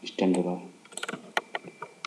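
A short spoken word, then a quick run of about half a dozen computer keyboard and mouse clicks as text is selected and bolded.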